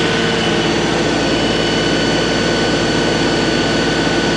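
Compact diesel tractor engine running steadily at raised throttle, with a steady high whine, while it powers a skid steer hydraulic auger on its low-flow hydraulics, turning slowly as it bores into very hard soil.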